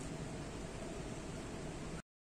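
Steady background noise, an even hiss with some low rumble and no distinct events, cutting off abruptly at the end.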